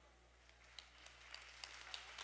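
Near silence: room tone with a steady low hum, a faint hiss that slowly grows in the second half, and a few faint ticks.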